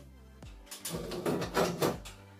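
Background music under a second or so of rustling and rattling handling noise about halfway through, as parts of an electrical panel are handled.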